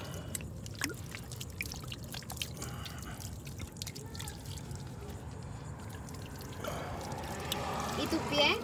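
Water poured from a glass bottle over bare legs and feet, trickling and dripping onto sandy ground. A steadier pour comes in near the end.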